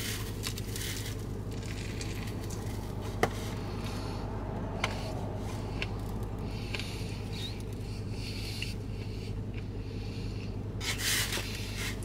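A man chewing a mouthful of sub sandwich with crisp lettuce: faint wet, crunchy mouth sounds, scattered small clicks and two sharper clicks a few seconds in, over a steady low hum.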